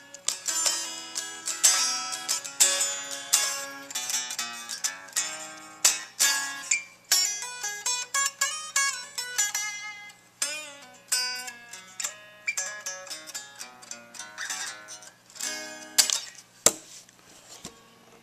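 1965 Fender Stratocaster electric guitar played clean through a Fender Super Reverb amp: a run of picked single-note licks with string bends, over a steady low amp hum.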